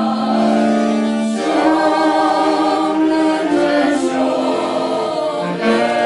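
A small folk band of clarinet, accordion, saxophone and brass horn playing a slow melody in long held notes, with a group of voices singing along.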